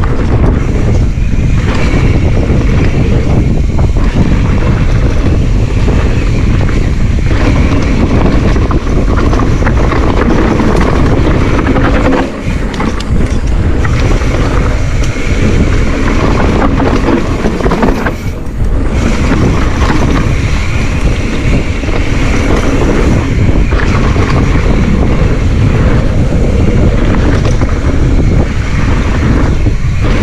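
Wind buffeting an action camera's microphone on a mountain bike descending a dirt trail at speed, mixed with the rumble of the tyres rolling over the ground. The rush is loud and steady, with two short lulls about 12 and 18 seconds in.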